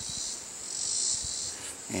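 Steady, high-pitched chorus of insects droning without a break.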